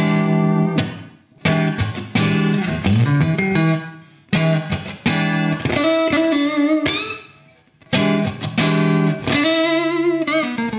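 Electric guitar (a Fender Stratocaster) played through a Marshall valve amp into vintage slanted Marshall 4x12 cabinets, switched in turn from a 1971 1960A (Celestion G12M speakers) to a 1972 1982A (bigger-magnet G12H speakers) and then a 1972 1935A. Short lightly overdriven phrases with string bends, broken by brief pauses.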